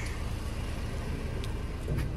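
Car engine idling with a steady low rumble over a light hiss. A faint click about one and a half seconds in and a soft knock near the end come from the metal gate being closed.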